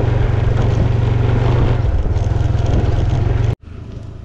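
Motor scooter's small engine running steadily while being ridden. It cuts off suddenly about three and a half seconds in.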